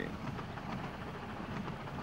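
Narrow-gauge steam train running past, a steady rumbling noise with hiss and no distinct exhaust beats.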